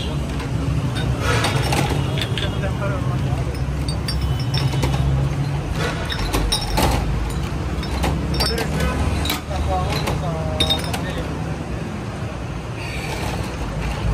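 Busy street-stall ambience: background crowd chatter over a steady low traffic rumble, with scattered sharp clinks of glass soda bottles being handled at the counter.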